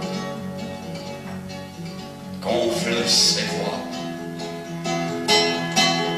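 Solo classical guitar played fingerstyle: picked notes ring over a bass line, with louder accented chords about two and a half seconds in and again near the end.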